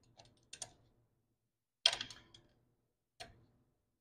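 A few sharp metallic clicks from a socket wrench on the flange bolts of a Honda GX340's gear reduction cover as the bolts are brought halfway tight in a crisscross pattern. The loudest clicks come in a short cluster about two seconds in, with single clicks before and after.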